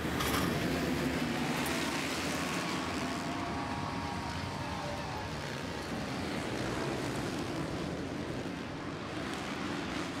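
A pack of supercross motorcycles running together at racing speed, their engines blending into one dense, steady sound with faint rising and falling pitches as riders rev.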